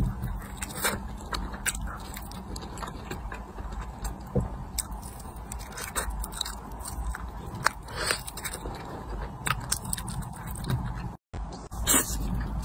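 Close-up eating sounds of sauce-glazed fried chicken being bitten and chewed: a run of short, sharp crunches and chewing clicks over a low steady hum. The sound cuts out briefly near the end.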